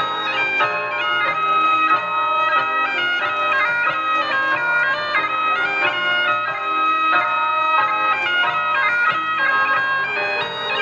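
Highland bagpipe playing a quick dance tune, the melody stepping from note to note over a steady drone.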